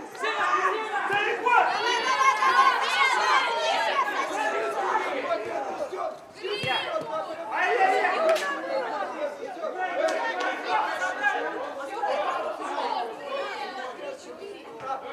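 Many overlapping voices of football players and spectators shouting and chattering, with higher-pitched calls cutting through, and a short lull about six seconds in.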